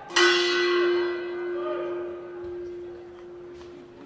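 A bell struck once, sudden and loud, then ringing out with a steady low tone that fades over about three seconds: the ring bell that starts the first round.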